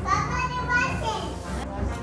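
A young child's voice vocalizing at play, mixed with other voices in the room.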